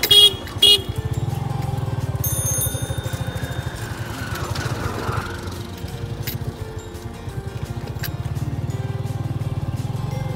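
Motorcycle engine running steadily while riding along a dirt road, with two short horn toots in the first second to warn people walking and cycling ahead.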